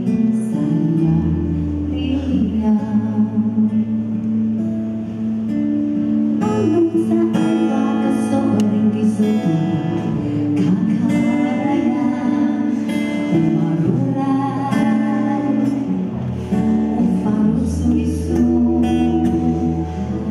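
Live band music: a woman singing over acoustic guitar with sustained bass notes underneath.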